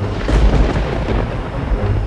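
A clap of thunder: a sudden crash that rumbles on deep and low, loudest about half a second in.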